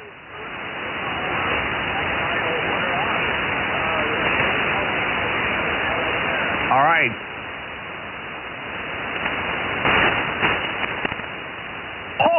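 Shortwave receiver hiss on the 75-metre amateur band, cut off sharply like a single-sideband voice channel, with a weak, barely readable voice buried in it: a distant station answering through the noise. A brief stronger voice fragment comes through about seven seconds in.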